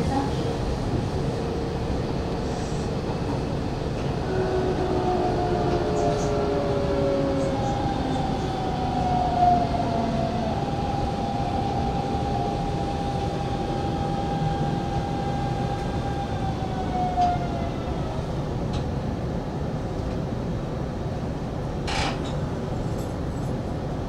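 Hanshin 5500 series electric train running, heard from the driver's cab: a steady wheel-on-rail rumble with an electric traction-motor whine that shifts in pitch, holds steady for a few seconds in the middle, then falls away.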